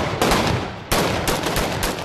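Rapid, overlapping gunfire: many shots in quick succession, with a brief lull just before a second in.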